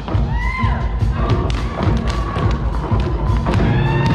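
Show choir singing with its live band, over a steady, heavy thudding beat. Held and gliding vocal notes ride on top.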